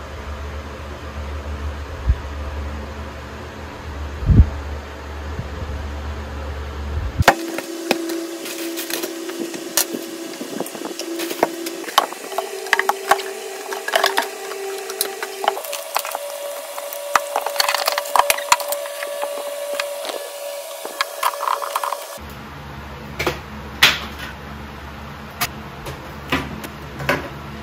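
Many sharp clicks, knocks and rattles from cables, plugs and desk items being handled at a desktop computer, the densest stretch in the middle over a faint steady hum that steps up in pitch twice.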